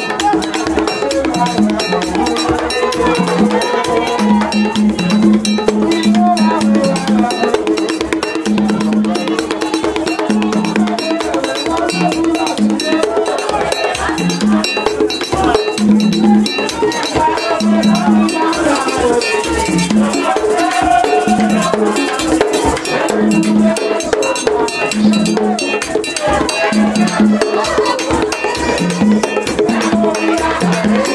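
Live Haitian Vodou ceremony music: repeating drum and bell-like metal percussion with voices singing, played steadily for dancing.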